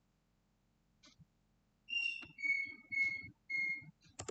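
Four clear whistled notes, the first higher and slightly falling, the other three lower and level, each about half a second long. A faint click comes about a second in, before the notes.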